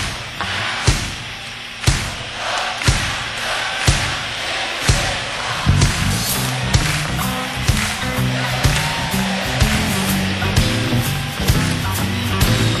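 Live electric blues band playing. Sharp drum hits keep a slow beat about once a second, and fuller low notes and other instruments fill in from about halfway through.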